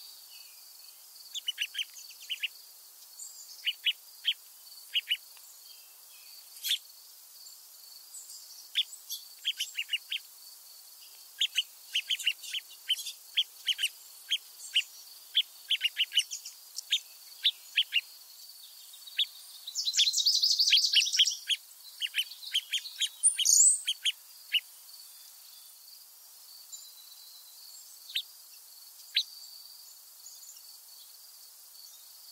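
Small songbirds calling with many short, sharp chip notes at irregular intervals, over a steady faint high hiss. About two-thirds of the way through comes a louder, denser burst of calling, followed by a quick rising note. After that the chips thin out to a couple near the end.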